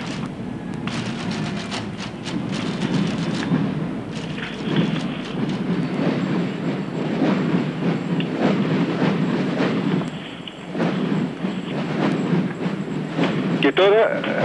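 Hundreds of massed parade drums beaten together, a dense rumbling din of overlapping strokes, with a brief lull about ten seconds in.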